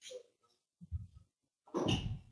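Brief, muffled vocal sounds from a man's headset microphone: three short bursts, about a second in and again near the end, cut off into dead silence between them.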